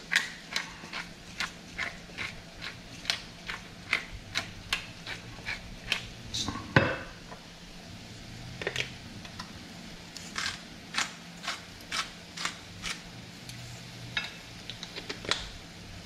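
Salt and pepper mills twisted over a pan: a long run of short, sharp grinding clicks, about two or three a second, with one louder knock about seven seconds in.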